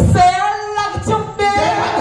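A woman singing into a microphone with no backing music: two long held phrases, broken by a short pause about a second in.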